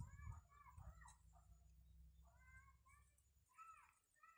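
Faint, distant animal calls: a series of short cries that rise and fall in pitch, coming every half second or so. Under them is a low rumble that stops about three and a half seconds in.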